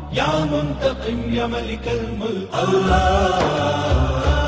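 Devotional chanting of the names of Allah: a voice holding long sung syllables over a steady low backing, with a brief break about two and a half seconds in.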